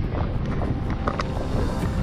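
Wind buffeting a phone's microphone, a steady low rumble, with faint music underneath.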